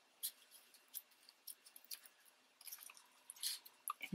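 Faint, scattered rustles and little ticks of fingers handling paper and a small square of foam tape, with a slightly louder rustle near the end.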